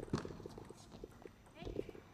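A table tennis rally: a plastic ball clicking sharply off bats and the table several times, the loudest hits just after the start and near the end.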